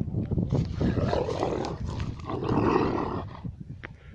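Kangal shepherd dogs growling as they play-fight: two long, rough growls, the second louder, then dying away near the end.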